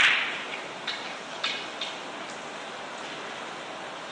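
Carom billiard balls clicking in a three-cushion shot: one sharp, loud click right at the start, then a few fainter clicks over the next two seconds.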